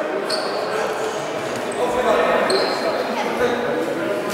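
A basketball bouncing a few times on a wooden sports-hall floor, amid indistinct, echoing voices of players and spectators.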